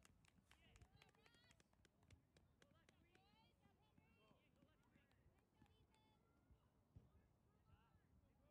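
Very faint, distant voices of players and people on the sidelines calling across a soccer field, with a few light clicks.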